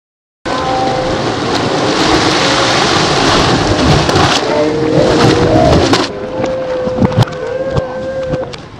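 Loud rush of water splashing as a child thrashes in a lake, starting abruptly after a moment of silence. The splashing dies down about six seconds in, followed by a couple of sharp knocks near the end.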